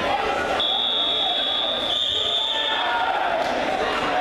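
A match clock buzzer sounds one long, steady high tone for about two seconds, marking the end of a wrestling period. Gym chatter runs underneath.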